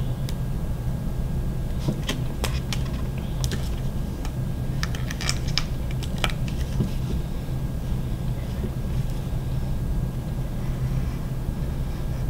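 A steady low room hum runs throughout, with scattered small clicks and scratches of a craft knife cutting through cardstock on a cutting mat. The clicks are bunched in the first half.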